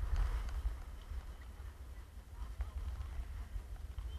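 Low wind rumble buffeting the camera microphone while skiing, with a short scrape of skis on snow in the first half-second as the skier slows into the lift line, then a few faint clicks of skis and poles.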